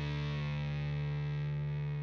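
Outro music: a single sustained distorted electric guitar chord ringing out, its brightness slowly fading.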